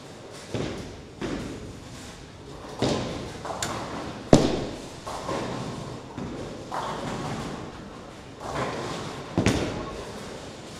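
Ten-pin bowling alley: a series of sharp thuds and crashes from balls landing on the lanes and pins being hit on several lanes, each ringing on in the big hall, the loudest about four seconds in, over a steady background din.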